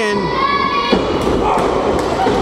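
Two wrestlers colliding shoulder to shoulder in the ring, with one body thud about a second in, after a held shout.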